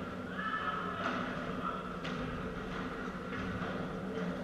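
A padel ball bounced on the court a few times before a serve, sharp knocks about a second apart, over a steady low hum in a large hall. A high wavering sound runs through the first second or so.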